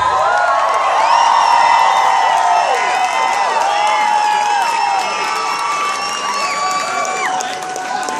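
Live audience cheering, whooping and applauding at the end of an acoustic song, the many overlapping shouts easing off a little in the second half.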